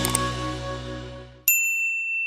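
Outro music fading away, then about a second and a half in a single bright ding, a notification-bell sound effect, that starts sharply and rings on steadily.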